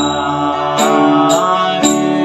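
Harmonium playing sustained chords for a kirtan, with a voice chanting over it and a percussion stroke about once a second.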